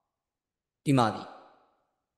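Speech only: one short spoken word, falling in pitch and fading, about a second in, with dead silence on either side of it.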